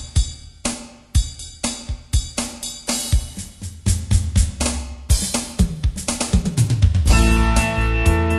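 Drum kit opening a song with kick, snare and cymbal strokes that come closer together as it builds. The rest of the band comes in with held notes about seven seconds in.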